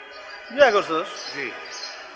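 A man's voice saying a short phrase about half a second in, with faint background noise in the pauses around it.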